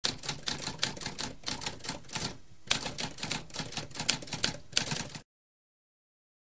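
Typewriter keys striking in a quick run of clicks, several a second, with a short pause about halfway through. The typing stops abruptly about five seconds in.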